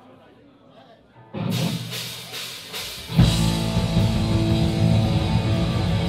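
Live hardcore punk band starting a song: after a second of low room noise, a few loud hits come about a second and a half in, then distorted electric guitars, bass and drums all come in at full volume about three seconds in.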